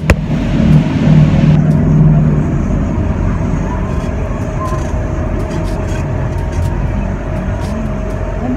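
Cabin noise of a moving passenger vehicle: steady engine and road rumble with a faint constant hum.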